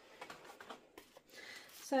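Soft rustling and small ticks of packaging being handled as the items of a diamond painting kit are picked up and moved around on a table, a little louder near the end.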